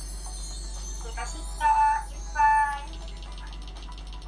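Two short, high, held musical notes over a steady low electrical hum, heard through a laptop's speaker.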